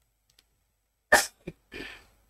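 A person's single sharp, explosive burst of breath about a second in, of the sneeze or cough kind, followed by a brief low sound and a quieter breath near the end.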